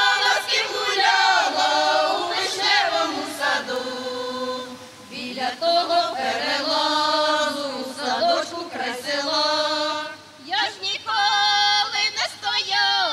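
Women's folk choir singing a Ukrainian folk song in long held phrases, with brief pauses about five seconds in and again near ten seconds.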